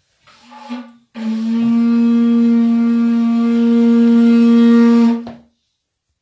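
A shofar (ram's horn) sounded: a brief first note, then one long, steady, loud blast of about four seconds that cuts off sharply.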